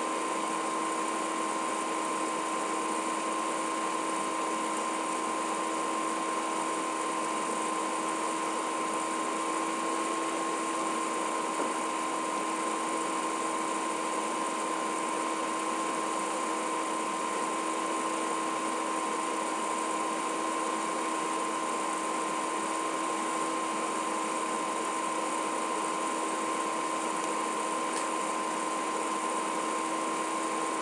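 Steady hiss of an open broadcast audio line between commentary calls, with a constant high whine and a lower steady hum running through it.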